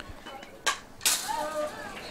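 A softball pitch arriving at home plate: one sharp pop about two-thirds of a second in, followed by faint distant voices of players.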